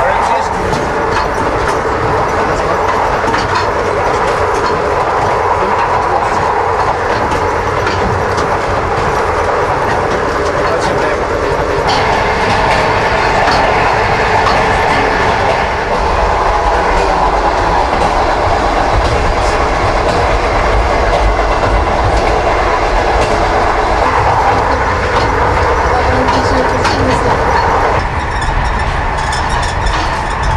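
Passenger train running along the rails: a steady, loud rumble with the clickety-clack of the wheels over the rail joints.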